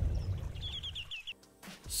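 The tail of a shout dying away, then a quick run of about six short, rising bird chirps about half a second in.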